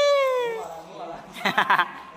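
A long wailing cry that rises and then slowly falls in pitch, fading out about half a second in; a short burst of speech follows near the end.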